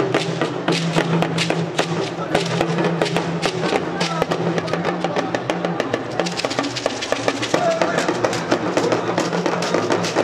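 Yoruba talking drums (dundun) played in a quick, busy rhythm of sharp strokes over a steady low note, with a voice singing or chanting along.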